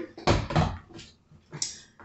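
Plastic water bottles set down on a kitchen counter: a short noisy thump early on, then a few light knocks as cans are picked up.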